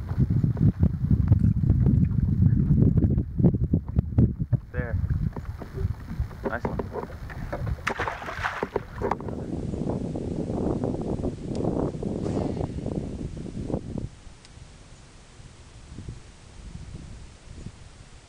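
Wind noise on the microphone and water against a small boat's hull, with scattered clicks and knocks from handling gear. The noise drops off sharply about three-quarters of the way through.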